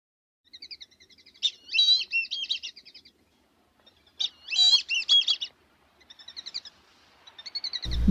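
Bird song: quick chirping trills and two longer warbling phrases, one about a second and a half in and another about four seconds in.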